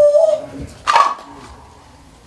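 A man's voice holds a long chanted note on the end of the word "sayonara", ending about half a second in. Just under a second in comes a single short, sharp, loud sound.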